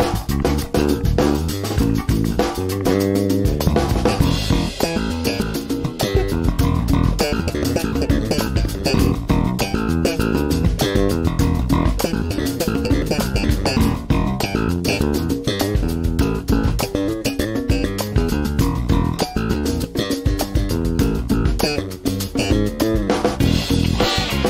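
Warwick Streamer Stage II electric bass played fingerstyle, a busy run of plucked bass notes over a backing track with drums.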